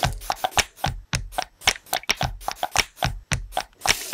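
Rhythmic percussion played on everyday objects such as cups tapped on a table: a fast, steady beat of sharp clicks and knocks, with deep thumps on some strokes.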